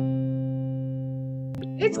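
Guitar music: a chord struck at the start is left ringing and slowly fades. There is a sharp click about one and a half seconds in, and a voice starts just before the end.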